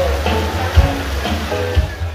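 Live band playing amplified music on electric guitars and drums, with a steady drum beat, dropping away at the very end.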